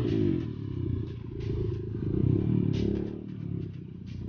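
Dirt bike engine running as the bike rides a rough dirt trail, its revs rising and falling, with a few rattles and knocks from the bike over bumps.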